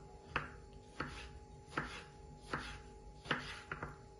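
Kitchen knife chopping a tomato into small cubes on a wooden cutting board: sharp knocks of the blade on the board, one roughly every three-quarters of a second, about six strokes.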